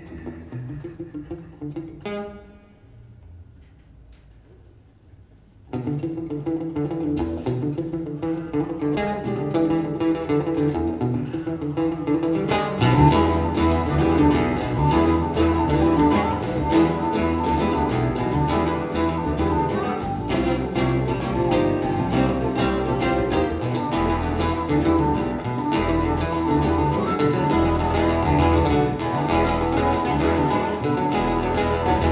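Live instrumental music from a small acoustic band of two acoustic guitars, keyboard and percussion. About two seconds in a note rings out and fades into a quieter pause; near six seconds the guitars come back in, and from about thirteen seconds the band plays louder and fuller, with sharp percussive strikes.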